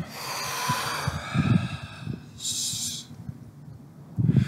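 A man exhaling hard through the mouth for about two seconds, then a second, shorter rush of air just before the three-second mark. He is emptying his lungs down to residual volume, as for an RV (empty-lung) freedive.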